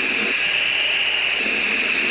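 Steady, loud rushing noise with a high-pitched hiss, picked up by the open radio microphone in Thrust SSC's cockpit at full power beyond 700 mph. It is the noise of the car's twin Rolls-Royce Spey jet engines on reheat and of the airflow.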